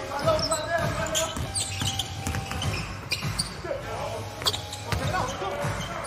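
Basketball bouncing on a hardwood court in short repeated knocks during live play, with players' voices calling out on the floor.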